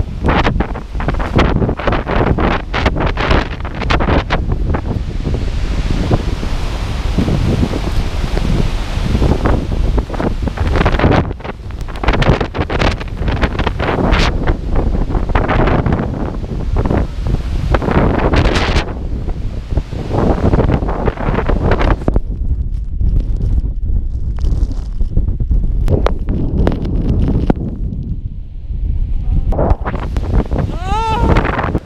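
Strong wind buffeting a handheld action camera's microphone in loud, uneven gusts. The gusts ease a little in the last several seconds.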